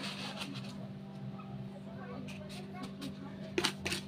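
A steady low background hum, then a few light clicks and taps near the end as a plastic cup is handled.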